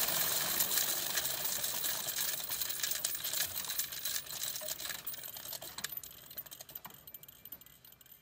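Faint crackling and clicking noise that slowly fades out.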